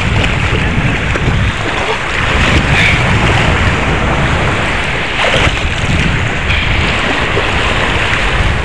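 Wind buffeting a phone microphone over the wash of shallow sea water, with splashing from people wading through it.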